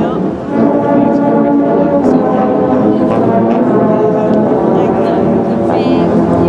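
A massed ensemble of tubas, sousaphones and euphoniums playing together in full, sustained low chords. There is a short break in the sound about half a second in before the chords carry on.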